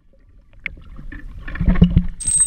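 Muffled underwater sound of pool water heard through an action camera held underwater: quiet at first with small clicks, then low rumbling and knocks of moving water that grow louder near the end.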